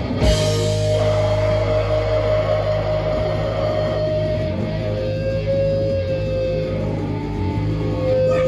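Live rock band playing loud, with distorted electric guitar and bass over a steady low drone. A long held high note rings on top and steps down slightly in pitch about five seconds in.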